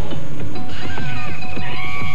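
Music for a TV station bumper: clattering, knocking percussion over a dense low layer, with high gliding, wavering tones in the second half.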